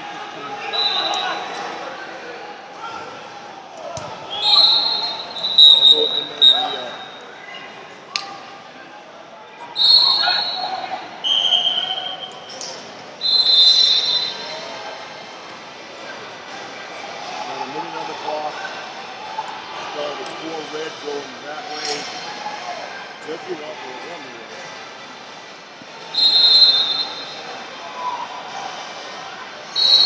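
Echoing babble of voices in a large gym hall during a break in a wrestling bout, cut by short high referee whistle blasts from the surrounding mats, several in a cluster between about 4 and 14 seconds in and a couple more near the end.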